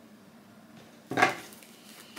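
Quiet room tone, then about a second in a single short clatter of something handled on the table, fading quickly.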